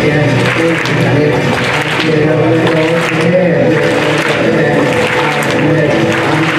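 Music playing under audience applause and cheering.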